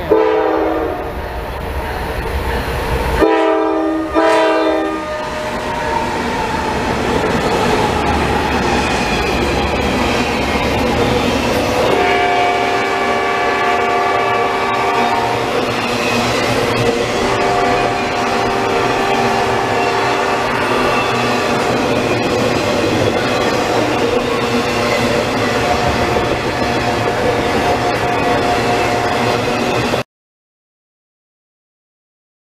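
Freight locomotive horn giving a horn salute: short blasts in the first five seconds, then long blasts about twelve and seventeen seconds in. Under the horn, the train runs past with a steady rumble and wheels clacking on the rails.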